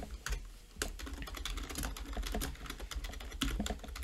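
Computer keyboard being typed on: an uneven run of quick key clicks as a short line of text is typed.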